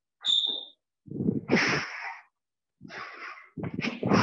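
Squash shoes squeaking on a hardwood court floor, with footsteps and hard breathing from a player moving through a shadow-swing drill. The sounds come in short separate bursts, with a brief high squeak near the start.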